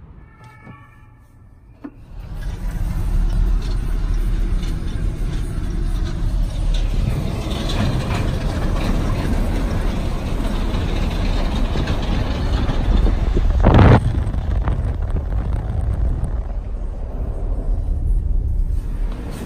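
Steady road and engine rumble of a car driving, heard from inside the cabin. It starts suddenly about two seconds in, and there is one brief loud thump a few seconds before the end.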